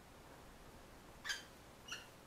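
Two short, high-pitched squeaks from a common kestrel, the first a little past halfway and a weaker one near the end.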